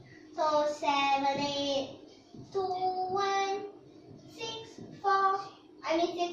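A young girl's voice singing held notes in about five short phrases with brief pauses between them.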